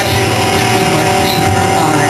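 Live rock band with distorted electric guitar holding one sustained chord.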